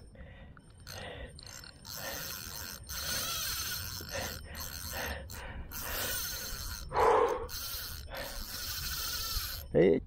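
Fishing reel buzzing in repeated stretches while a hooked crevalle jack fights on the line, with a short loud grunt about seven seconds in.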